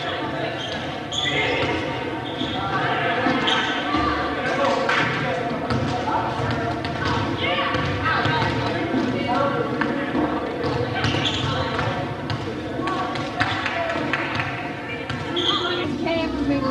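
Many voices talking and calling out at once in a reverberant gymnasium, with scattered thuds of a volleyball being hit and bouncing on the wooden floor.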